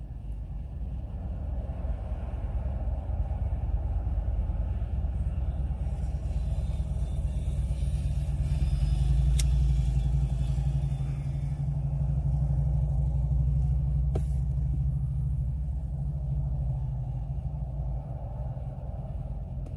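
A low, steady rumble, loudest in the middle, with a sharp click about nine seconds in as a pocket lighter is struck, and another click a few seconds later.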